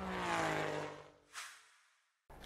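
Sound effect for an animated logo: a sweeping tone whose pitch falls slowly as it fades out over about a second and a half, with a short whoosh near the end.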